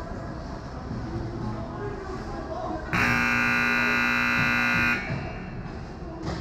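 Ice hockey rink horn sounding one steady blast of about two seconds, starting about three seconds in, over the noise of voices in the arena. It is the horn that ends play.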